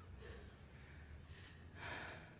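Near silence with a faint low room hum, and a short, faint intake of breath near the end.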